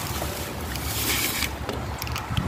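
Wind rumbling on a handheld phone's microphone, with a rustling hiss from the phone being moved about for about a second in the middle.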